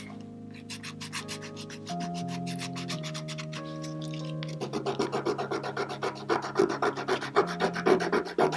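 A 180-grit nail file rasping over a dip-powder nail in quick, circular strokes, buffing the coat smooth and thinner. The strokes get louder from about halfway in, with soft background music underneath.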